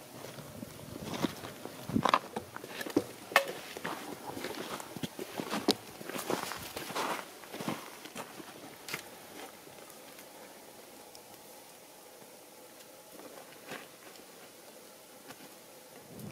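Footsteps on loose stony ground and dry brush: irregular crunches and scrapes of people walking. They are busy for the first half, then fewer and fainter.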